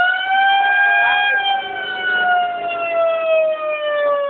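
A siren sounding one long wail to start an airsoft game, its pitch sinking slowly and steadily as it winds down.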